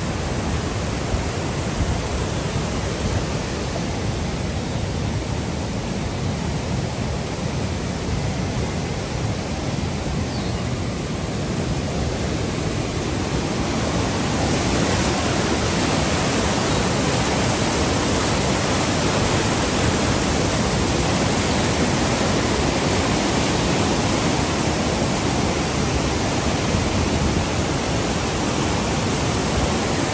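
Fast mountain river rapids: whitewater rushing over boulders in a loud, steady wash of water noise that grows louder about halfway through.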